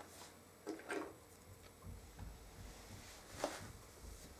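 Faint, soft taps and rustles of a child picking a cut-out letter from a wooden compartment box and setting it down on a cloth mat, a few weak short sounds in a quiet room.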